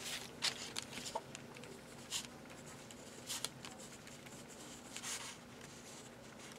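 Gold gel pen writing on black paper: faint, scattered scratchy strokes of the pen tip.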